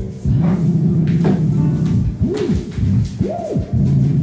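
Theremin played by moving a hand near its pitch antenna, holding a low wavering tone and sliding smoothly up and down in pitch, with two big swoops up and back down in the second half. The pitch wanders loosely, as the instrument is really hard to control.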